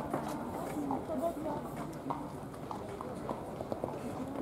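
A horse's hoofbeats, soft and irregular, as it canters on a sand arena, with faint voices in the background.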